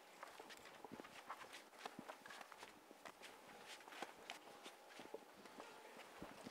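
Near silence: quiet room tone with faint, irregular clicks and taps scattered through it.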